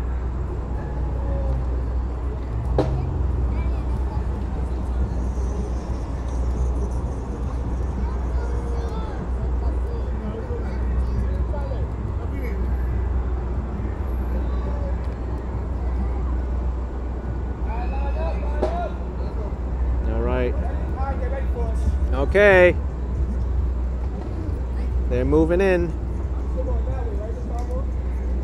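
Outdoor crowd ambience: people talking nearby over a steady low rumble. Several louder, wavering voices call out in the last third.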